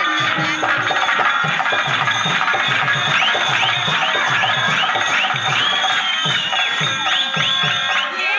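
Live dance music on a keyboard and drum: a steady drum beat of about two to three strokes a second under a keyboard melody whose notes repeatedly bend up and down in pitch.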